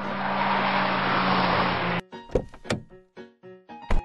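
Cartoon car sound effect: an engine sound with a steady low hum grows louder for about two seconds, then cuts off abruptly. Several sharp thuds follow, interspersed with short piano-like notes.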